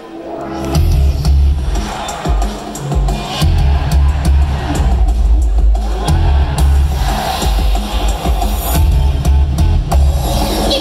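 Idol-pop song played loud through the stage PA speakers, fading in over the first second and then running on a heavy bass beat.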